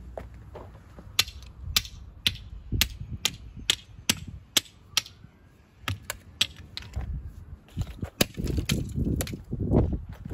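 A run of sharp clicks and taps, roughly two a second and unevenly spaced, as a long-handled tool knocks and pokes among broken plastic and metal pieces of a smashed steam mop. Near the end the clicks give way to denser scraping and crunching in the dirt and debris.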